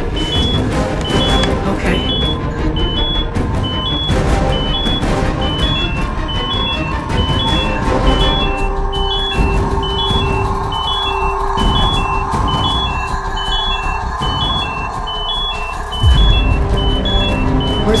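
Electronic beeping alternating between two high tones about twice a second, over dark suspense music with a steady low drone. A louder low rumble comes in about two seconds before the end.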